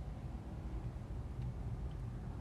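Faint, steady low background rumble with no distinct sound events.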